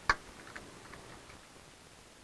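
Clicks from working at a computer while editing code: one sharp click just after the start, then a few faint, irregular clicks over the next second or so.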